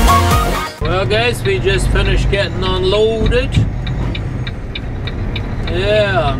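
Background music that cuts off abruptly under a second in, followed by a semi truck's diesel engine running steadily in the cab, with a man's voice over it.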